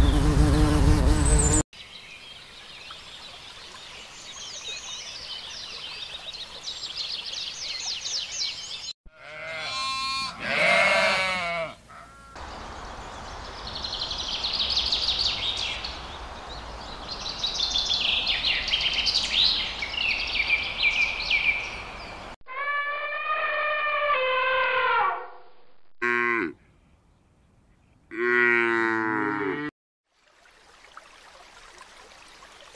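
A run of separate animal sounds with abrupt cuts between them: high chirping, a drawn-out pitched animal call, then a common starling singing with rapid high chirps and whistles for about ten seconds. Several more drawn-out pitched animal calls follow near the end, the last ones cut off short.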